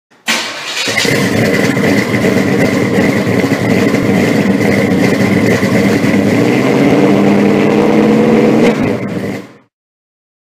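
Car engine running loud and revving, rising a little in pitch near the end, then cutting off suddenly.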